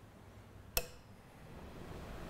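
A single sharp metallic click about three-quarters of a second in, from the start lever of a Reuge Dolce Vita interchangeable-cylinder music box being flicked to set it playing.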